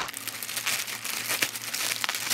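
Shipping bag crinkling and rustling as it is handled and opened, with a continuous run of quick crackles.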